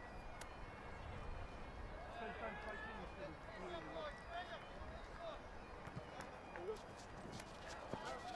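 Faint, distant shouts and calls of rugby players on the pitch, heard over a steady low outdoor background rumble.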